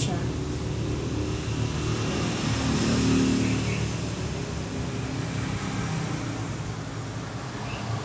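Road traffic: a steady low rumble of passing vehicles, loudest about three seconds in.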